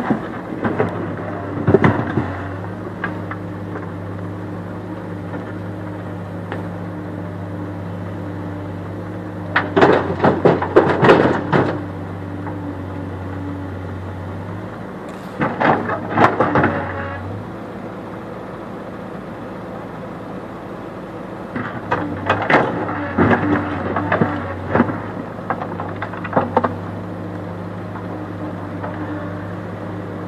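Diesel engine of a Case backhoe loader running steadily, with four bursts of clattering rocks as the bucket scrapes up and dumps stones into a tractor trailer.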